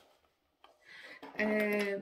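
A short quiet stretch, then a woman's voice making a held, steady vocal sound that starts a little past halfway and runs into laughter.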